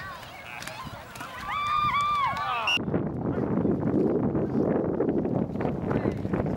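Spectators at the game shouting, with high, drawn-out, rising-and-falling yells. About three seconds in the sound switches abruptly to a duller, muffled wash of crowd noise and chatter.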